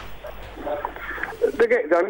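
Speech only: a man's voice over a narrow-band line starts to answer about halfway through, after a faint hiss and a click at the start.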